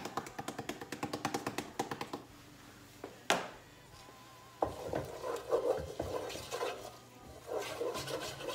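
A hand-twisted pepper mill grinding pepper over a saucepan, a fast run of clicks for about two seconds. A single sharp click comes a little over three seconds in, and from about halfway on a utensil rubs and scrapes as onions and shallots are stirred in the saucepan.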